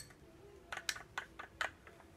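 A handful of light, irregular clicks of a hand tool working at the hub of a small child's bicycle wheel as it is fitted to the frame.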